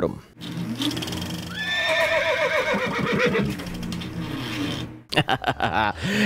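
A short intro sting for a comedy segment: a held musical tone with a drawn-out pitched call sliding down in the middle, then several sharp clicks near the end.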